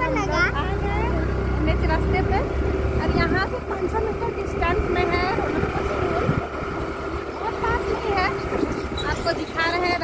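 Motorcycle engine running steadily while the bike is ridden along a road, with wind rushing on the microphone. Voices talk over it.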